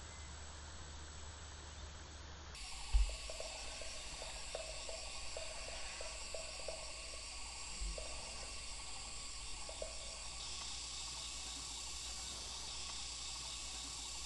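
Insects chirping steadily in a high, pulsing chorus, with faint hiss before it comes in about two and a half seconds in. A brief low thump falls about three seconds in.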